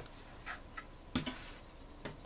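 Soft handling of sweatshirt fleece as it is smoothed and lined up on a cutting mat, with one sharp click a little past a second in.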